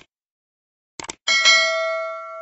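Subscribe-button animation sound effect: a short click, another click about a second in, then a bright notification-bell ding. The ding rings on in several steady tones and slowly fades.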